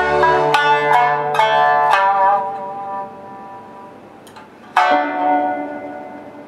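Shamisen and electric violin ending a piece: the violin's held note stops about half a second in, a few plucked shamisen notes fade away, then one last loud struck shamisen note near the end is left to ring.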